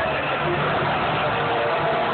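Steady, loud roar of a packed stadium crowd mixed with the scoreboard intro video's soundtrack over the stadium loudspeakers, muffled and clipped by a phone microphone.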